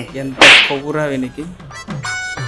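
A sharp, loud swish like a whip-crack sound effect about half a second in, followed by a wavering pitched tone. Background music comes in near the end.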